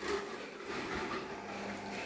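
Quiet room noise with a faint, steady low hum.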